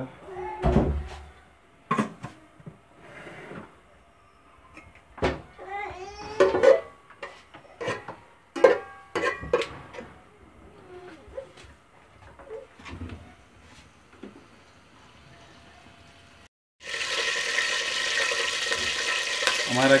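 Spoon clinks and knocks against an aluminium pot of melting ghee, with a few short pitched voice-like sounds in the background. About three seconds from the end there is a cut, and a loud, steady sizzle starts: the ghee is now hot in the pot, ready for frying.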